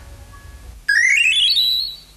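An electronic sound effect: a quick run of beeping notes climbing in pitch step by step, starting about a second in and lasting about a second.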